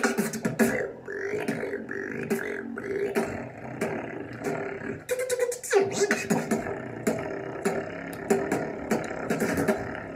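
Solo beatboxing: quick mouth-made percussive clicks and snares over a held vocal tone, with a sharp falling sweep about six seconds in.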